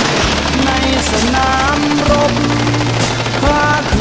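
A song with singing and a steady bass line over bursts of heavy machine-gun fire from guns mounted on a half-track.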